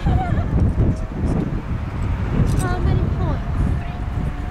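Wind rumbling on the camera microphone, with faint voices of people talking.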